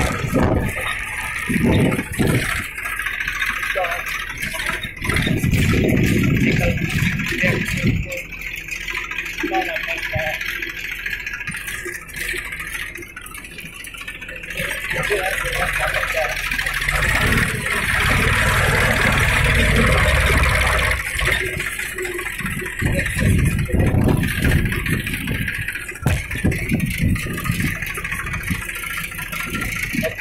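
An old farm tractor's engine running while the tractor is driven across a ploughed field, its low rumble swelling and easing in irregular surges.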